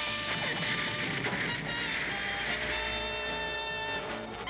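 Cartoon action background music with steady held notes, under a noisy rushing sound effect that is strongest over the first two seconds and then fades into the music.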